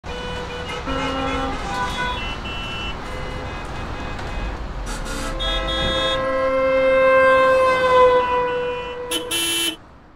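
A motor vehicle running under a series of short horn toots, then a long held horn note that dips in pitch at its end, and a last brief loud blast just before the sound cuts off.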